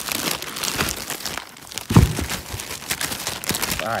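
Clear plastic wrapping crinkling as it is handled and pulled off a new brake rotor, with a single thump about halfway through.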